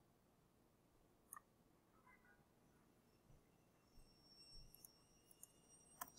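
Near silence with a few faint computer mouse clicks: one about a second in, then several more in the second half.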